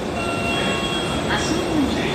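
Subway platform with a JR East E231-800 series train standing with its doors open: a steady low rumble, with an electronic chime of several steady high tones lasting about a second near the start, over nearby voices.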